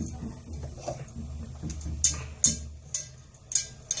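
Hands rubbing and pulling apart buttered shredded kataifi pastry strands in a stainless steel bowl: a soft, dry rustle with several sharp crackles in the second half.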